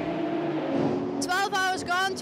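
A race car's engine running with a steady hum for about a second. A high-pitched voice then takes over.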